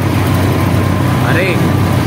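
Auto rickshaw's small engine running steadily while the rickshaw drives, heard from inside its open cabin with road noise.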